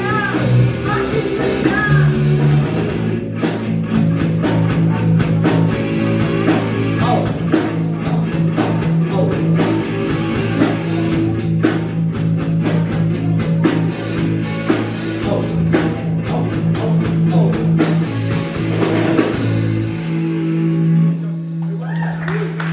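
Rock band playing an instrumental passage on electric guitar, electric bass and drum kit. Near the end the bass and drums stop and a single held note rings on.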